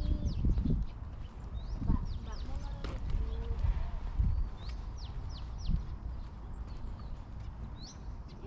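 Small birds chirping in short, high, falling notes, several in quick runs about halfway through, over a steady low rumble of wind on the microphone.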